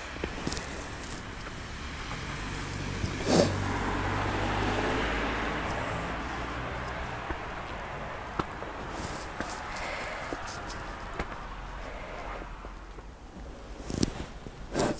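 A car passing on a wet, slushy road: tyre hiss and a low engine hum swell over a few seconds, loudest a few seconds in, then fade away.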